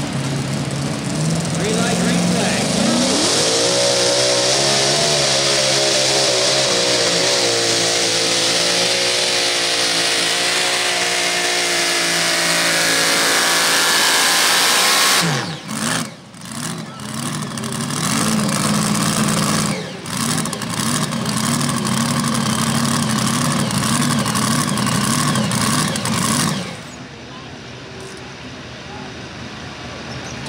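Mini rod pulling tractor's engine idling, then revving up about two seconds in and running at full throttle, its pitch wavering, as it pulls the sled for about twelve seconds. The revs then cut off abruptly with a few crackles, the engine runs steadily at lower revs, and near the end it drops to a quieter idle.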